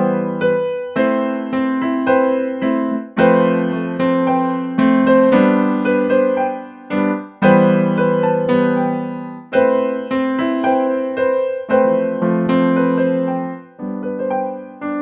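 Electronic keyboard on a piano voice playing a slow, simple chord progression: left-hand E minor (E-G-B) moving to G major (G-B-D) under a right-hand figure on B, C and G. Each chord is struck and left to fade, with a new strike about every one to two seconds.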